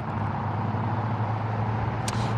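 Steady road traffic noise at a busy intersection: a continuous low engine rumble and hum with no sudden events.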